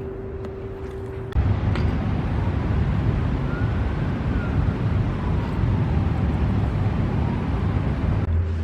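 A steady hum, then about a second in a loud, even low rumble of city traffic cuts in suddenly and runs on steadily.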